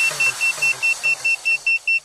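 A downed FPV quadcopter's lost-model buzzer beeping, a single high tone about five times a second, to help find the drone in the undergrowth. Music fades out beneath it.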